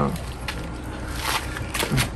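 Faint crinkling and sipping of a plastic drinking-water sachet being handled and drunk from, over a steady low background rumble.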